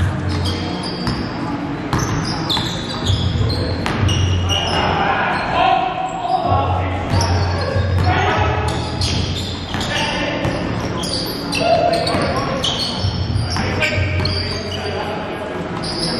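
A basketball being bounced on a hardwood gym floor, with short high sneaker squeaks and indistinct players' voices in a large gym hall.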